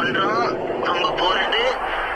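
A voice with sliding, pitch-bent phrases, part of a remixed background music track.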